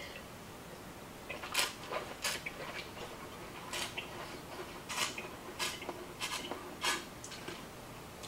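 Short, sharp clicks and wet smacks, about seven spread unevenly over several seconds, from sipping red wine and working it around the mouth to taste it.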